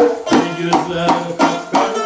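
Live Uzbek Khorezm folk music: a tar, a long-necked plucked lute, played in quick plucked notes over doira frame drums struck in a steady rhythm, with a man singing.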